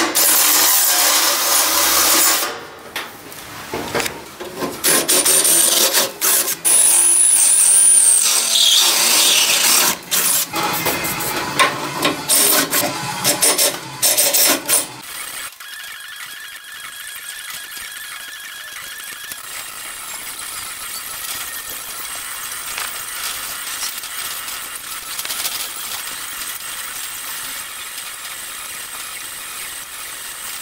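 Cordless drill driving a Bosch step drill bit through 2 mm sheet metal, opening holes out for 10 mm studs. It runs in several bursts with a high squeal in the middle of the run, then stops suddenly about halfway through, leaving a quieter steady hiss.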